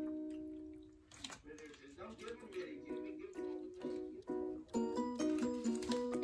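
Background music: a light tune of short pitched notes that dips low about a second in, then picks up again.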